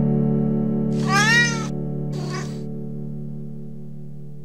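A domestic cat meows once, a clear call that rises and falls in pitch, then gives a shorter, fainter second call. Both sound over a held electric-piano chord that slowly fades.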